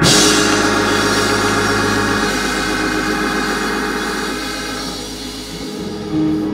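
A live band strikes a chord and holds it: sustained keyboard or organ tones and a deep bass note under a cymbal wash, slowly fading.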